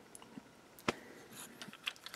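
Hard plastic parts of a transforming robot action figure clicking as they are handled and shifted: faint scattered ticks and one sharp click a little under a second in.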